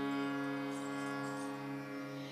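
Harmonium holding a steady sustained drone note, fading slightly toward the end.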